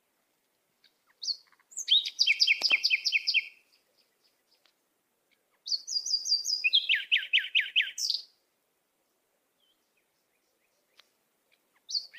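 Bird chirping: two bursts of rapid repeated chirps, each about two seconds long and a few seconds apart, with complete silence between them.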